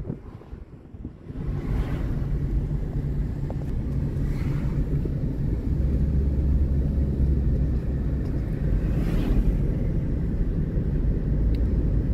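Road and engine noise inside a moving car: a steady low rumble that picks up about a second in, with a few faint swells of hiss from passing traffic or air.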